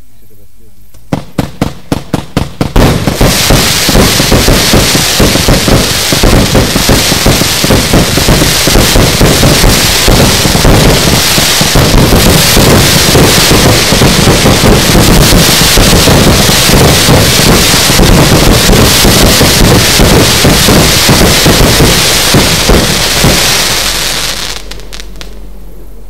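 Red Wire 'Wall of Willows' 90-shot firework compound firing. About a second in come separate shots, about four a second, and then a rapid continuous barrage with a steady hiss that runs for about twenty seconds and dies away near the end.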